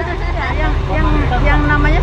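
People talking over the steady low hum of an idling tour coach's diesel engine.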